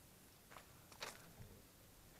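Near silence, broken by two faint, brief rustles about half a second and a second in and a soft low thump just after, as the camera is handled.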